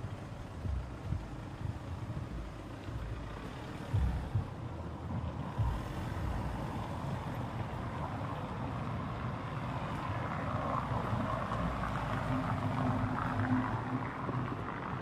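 Low rumble of motor-vehicle traffic on a city street, growing louder toward the end, with a few dull low thumps about four and five and a half seconds in.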